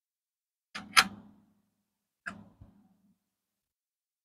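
Pennies clicking against a wooden tabletop as they are handled: two pairs of sharp clicks, the loudest about a second in, each with a short dull knock.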